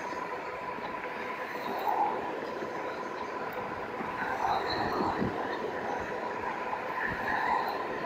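Steady wind and road noise from an e-bike at about 21 mph, its fat tyres rolling on pavement, with a thin steady whine underneath. The noise swells briefly about five seconds in as an oncoming car passes.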